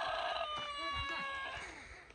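A rooster crowing: the long held end of a crow, sinking slightly in pitch and fading out about a second and a half in.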